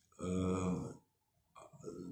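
Speech only: a man's drawn-out hesitation sound "eh", held on one steady pitch for most of a second, then a short pause before he starts talking again near the end.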